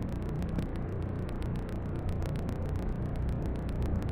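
Steady rain falling, with many small drop clicks over a low rumble.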